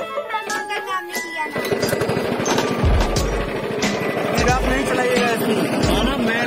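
Background music for about the first second and a half, then a go-kart's small petrol engine running close by, a rapid, even chatter of firing pulses that carries on to the end, with voices over it.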